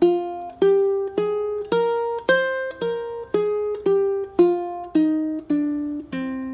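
Ukulele playing the C minor scale one plucked note at a time, about two notes a second: it climbs to the high C about two seconds in, then steps back down through B-flat, A-flat, G, F, E-flat and D, reaching low C at the very end.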